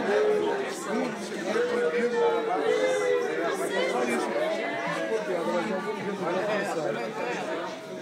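Overlapping chatter of a group of people talking at once in a large room, with no single voice standing out.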